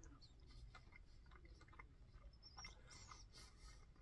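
Near silence with faint, irregular small clicks and crunches of someone chewing a bite of crispy-skinned roast chicken.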